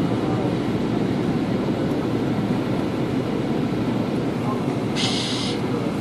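Steady roar of an airliner cabin on descent: engine and airflow noise at an even level, with a short hiss about five seconds in.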